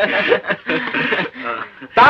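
Two men chuckling together, mixed with short bits of speech.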